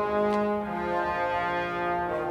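Sampled orchestral bass trombones holding sustained low notes, with other brass voices chording above them. The notes shift slightly once or twice.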